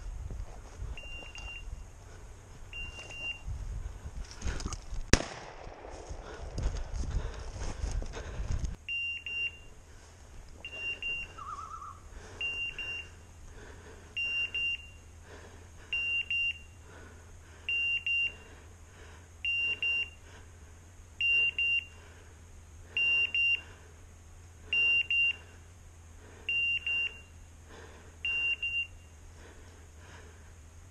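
A pointing dog's beeper collar giving short, high double beeps, evenly about every one and three-quarter seconds from about nine seconds in: the steady signal that the dog is holding a point. Before that, footsteps push through dry brush with a sharp crack about five seconds in, and the beeps come only a few times.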